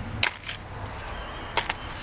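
Pieces of charcoal crunching and clinking as a hand digs into a bucket of them: a few short, sharp clicks, two near the start and two more past the middle.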